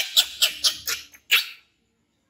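Baby monkey screaming in fright: a quick run of about six short, shrill shrieks that stops about one and a half seconds in.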